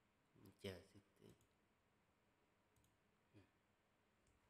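Near silence broken by a man's soft mouth clicks and a brief, quiet voiced murmur about half a second to a second in, with one more faint click near the end.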